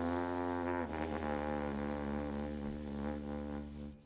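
Live jazz: a trumpet holds a long note over a sustained Hammond organ chord and low bass. The band cuts off sharply just before the end.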